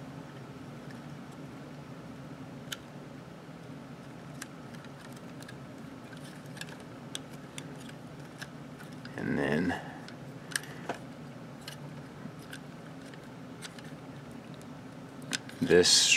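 Light, scattered clicks and taps of a transforming robot figure's plastic parts being folded and pressed into place by hand, over a steady low hum.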